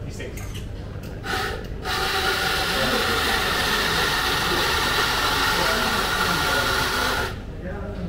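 Carimali electric coffee grinder grinding espresso beans: a brief burst just over a second in, then a steady motor whirr for about five seconds that stops sharply near the end.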